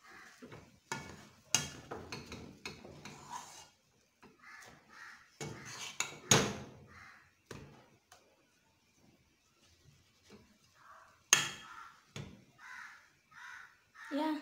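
A metal utensil mashing and stirring potatoes in a pot, scraping and knocking against the pot in irregular strokes, with a few sharper knocks.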